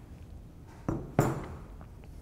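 Two knocks on a stainless steel worktable just past the middle, about a third of a second apart, the second louder with a short ring, as the dough-wrapped rolling pin is handled.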